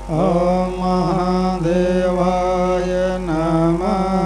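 A single voice chanting a Hindu devotional mantra in three long sung phrases, each opening with a rising slide.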